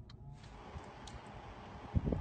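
A last light tick, then from about a third of a second in a steady hiss of a thin stream of water pouring and splashing into standing water, with a sharp knock near the end.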